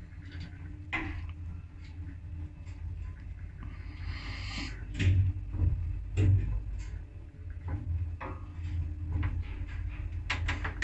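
Old ZUD single-speed passenger lift running, with no inverter drive: a steady low motor hum with scattered knocks and clunks from the car and its doors.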